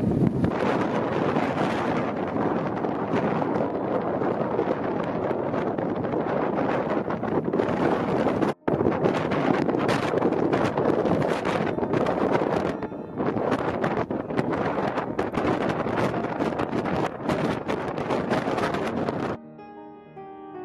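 Strong wind buffeting the microphone in uneven gusts, with a brief cut-out a little before halfway. The wind noise stops abruptly near the end and piano music comes in.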